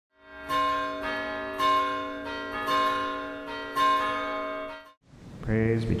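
A bell struck four times about a second apart, each ring sounding on into the next and fading out about 5 seconds in.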